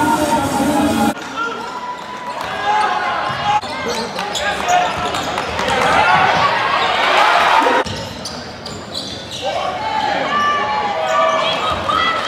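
Live sound of a college basketball game in a large hall: a basketball dribbling on the hardwood court amid crowd voices. Background music plays briefly at the start and cuts off about a second in; the crowd noise swells in the middle and drops abruptly a little before the end.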